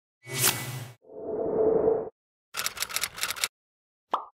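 Logo-animation sound effects: a whoosh, then a swell that grows louder for about a second, then a quick run of about seven short hits.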